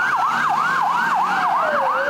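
Ambulance siren in a fast yelp, its pitch sweeping up and down about four times a second, with a second siren tone sliding slowly down in pitch beneath it.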